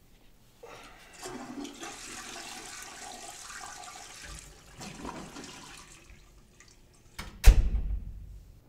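A toilet flushing: a rush of water lasting about four seconds, with a shorter surge just after. Near the end comes a loud thump.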